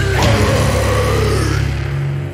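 Heavy, sludgy post-metal with death-metal edge: distorted guitars over a deep, dirty bass tone, sustained and loud. The sound begins to thin near the end as the song reaches its close.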